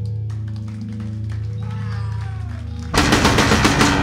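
Live industrial noise-rock trio of guitar, bass and drums: a sustained low, distorted drone with high gliding guitar tones above it. About three seconds in, a much louder burst of rapid drum strikes crashes in.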